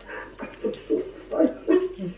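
A voice making short, whimpering, high vocal sounds around the words "oh my god", several brief rising cries in quick succession.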